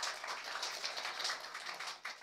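Audience applauding: many hands clapping in a dense, even patter that eases slightly near the end.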